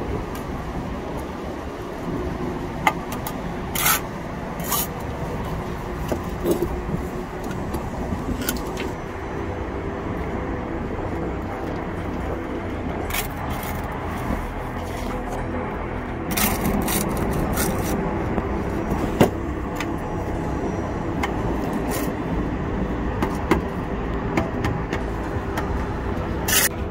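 Steel brick trowel scraping mortar and tapping on brick, with sharp clicks and knocks scattered irregularly through, over a steady low background rumble.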